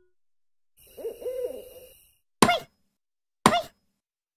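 Cartoon sound effects: a short pitched gliding sound about a second in, then two sharp knocks about a second apart, each with a brief ring that drops in pitch and wobbles.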